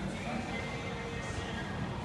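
Indistinct voices and faint music in a large room, with no single close sound standing out.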